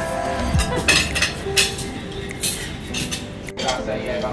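Cutlery clinking against plates at a meal: several sharp clinks spread over the first two and a half seconds, with soft background music underneath and voices after a sudden cut near the end.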